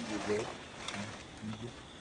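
Three short, low vocal sounds like grunts or murmured syllables, over a steady outdoor hiss.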